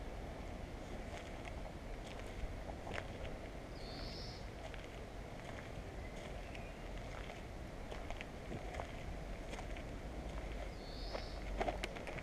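Footsteps through grass and dry dirt, with scattered light crunches and ticks over a steady low outdoor hum. A bird chirps briefly twice, a few seconds in and near the end.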